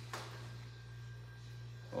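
A steady low electrical hum with a faint, brief noise just after the start; no hammer blow is heard.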